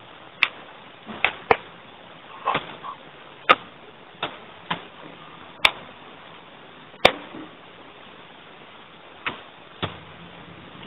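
Scattered sharp clicks and taps, about ten in ten seconds at uneven intervals, over a steady low hiss.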